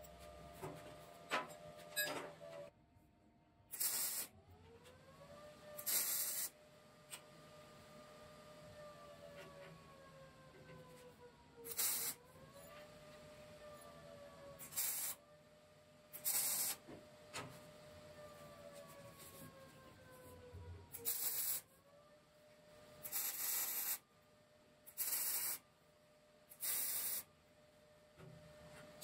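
A series of about ten short bursts of sizzling MIG welding arc, each lasting under a second: tack welds on 1/4-inch steel. A faint whine underneath slowly falls in pitch and jumps back up a few times.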